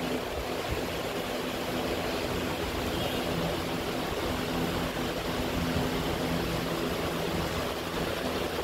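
Steady hissing background noise with a faint low hum underneath, unchanging throughout.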